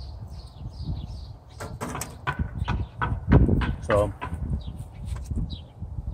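A few sharp knocks and rattles from handling at the offset smoker, the loudest about three seconds in, with faint bird chirps in the background.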